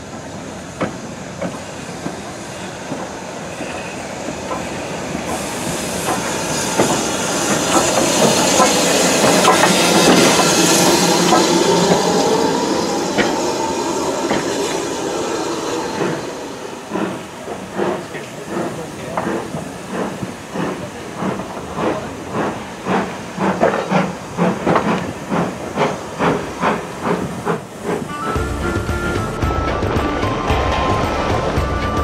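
BR Standard Class 2 2-6-0 steam locomotive 78018 at the platform: a loud hiss of steam that builds and then fades. This is followed by a run of regular exhaust beats that slowly quicken as it moves off.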